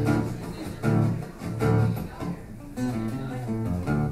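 Acoustic guitar strummed in a short instrumental passage between sung lines, with strong chord strokes about a second in and again shortly after.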